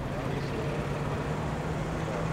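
Ford Mustang's engine running under power as the car drives down the course, a steady engine note with little change in pitch.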